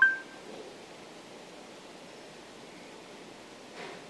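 A short two-note electronic beep, a lower tone then a higher one, right after the spoken voice command: the Android phone's voice-recognition tone. It is followed by a steady faint hiss of room tone.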